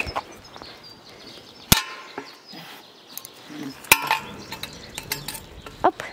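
Sharp metallic clinks and knocks on the wire-mesh cage and its metal frame, two louder ones about two seconds apart with a brief ring, and a few lighter taps between them.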